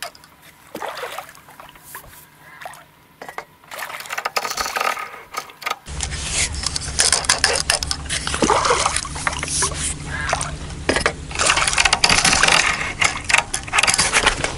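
A hooked carp being played close to the bank: water splashing and churning at the surface, with rod and handling noise. It is quiet with a few small knocks at first, then from about six seconds in the splashing comes thick and loud over a steady low rumble on the microphone.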